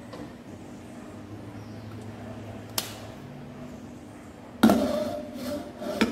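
A cooking pot handled as it is set on the stove to boil: a single sharp click about three seconds in, then louder clattering metal knocks near the end, over a faint steady hum.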